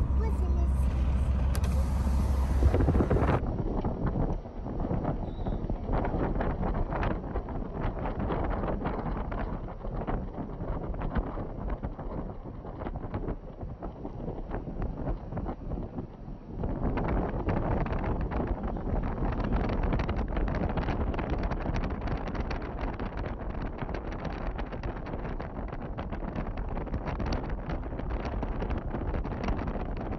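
Road noise of a moving car with wind rushing over the microphone, a rough steady rush that dips for a while and grows louder again a little past halfway.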